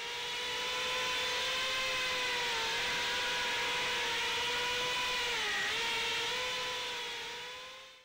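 FPV quadcopter's brushless motors and propellers whining steadily in flight. The pitch dips briefly twice, and the sound fades in at the start and out at the end.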